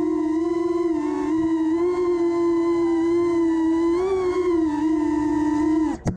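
Cinewhoop FPV quadcopter's motors and ducted propellers whining at one steady pitch, wobbling slightly up and down with throttle, then cutting off abruptly at the very end.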